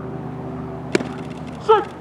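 A single sharp smack about a second in, a pitched baseball popping into the catcher's mitt, over a steady low hum. A short shout comes near the end.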